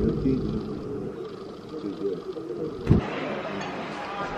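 Muffled voices and background noise at a café table, heard mostly as low sound, with one sharp knock about three seconds in, after which the background becomes fuller and brighter.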